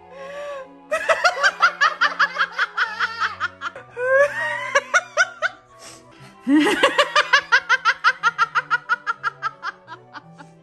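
Hearty laughter in long runs of rapid ha-ha pulses, starting about a second in, again around four seconds and a longer run from six and a half seconds, over background music with steady low held notes.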